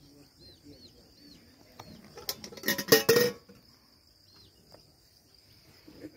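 Aseel chicks peeping with faint, scattered high chirps, a few at a time. About two seconds in comes a louder, scratchy burst of sound lasting about a second.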